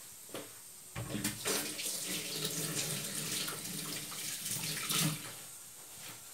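Water running in a steady stream, as from a kitchen tap, starting abruptly about a second in and stopping shortly before the end.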